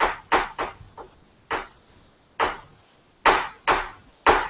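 Kitchen knife slicing almonds into slivers on a chopping board: the blade knocks on the board in a quick run of strokes in the first second, then single strokes about a second apart.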